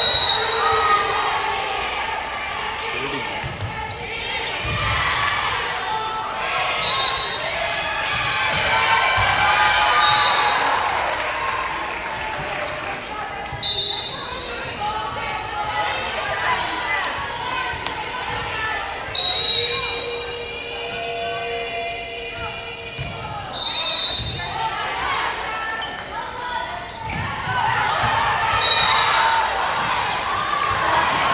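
Indoor volleyball match sounds echoing in a large gym: spectators talking and cheering, thuds of the ball being hit, and short high squeaks every few seconds.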